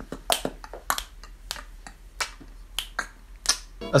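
A run of sharp, quiet clicks, irregularly spaced at about three a second, made by a person in a small room.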